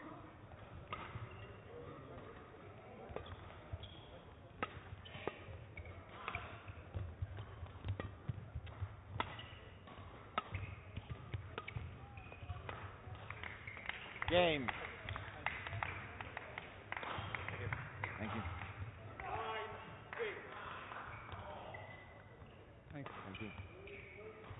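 Badminton rally in a large hall: sharp racket hits on the shuttlecock at irregular intervals, with footsteps and squeaks on the court floor. A strong falling pitched squeak or cry comes about 14 seconds in, and voices follow later in the rally before the hits stop shortly before the end.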